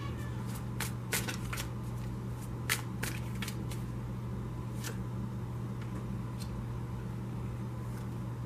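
A deck of tarot cards being shuffled and handled by hand: a quick run of crisp card snaps in the first few seconds, then a few single taps as cards are set down. A steady low hum sits underneath.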